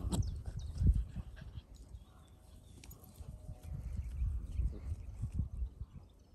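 Two dogs, one a Dalmatian, play-fighting: low grunts and growls in irregular bursts, loudest about a second in and again in a run in the second half, with birds chirping faintly.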